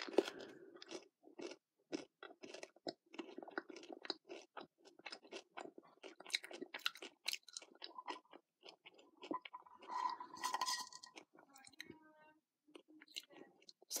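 Close-up chewing of a Cadbury Mini Egg: its hard sugar shell crunching and cracking between the teeth in quick, irregular crunches.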